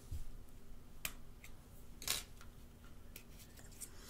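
Faint small clicks and handling noises of fingers working the metal SIM card tray out of an iPhone 5S's side slot, with three light clicks about a second apart.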